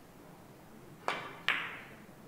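Carom billiard shot: a sharp click of the cue tip striking the cue ball, then, less than half a second later, a louder, ringing click of the cue ball hitting another ball.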